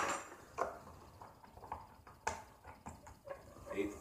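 A few light clicks and taps of small sauce bottles and spoons being handled on a wooden table, the sharpest about half a second in and just after two seconds, with some low speech.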